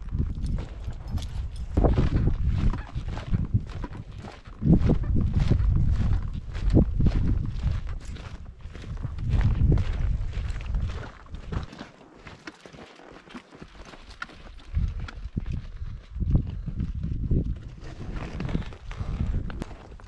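Footsteps on a gravel dirt road, under gusts of wind buffeting the microphone that rise and fall, dropping away for a couple of seconds past the middle.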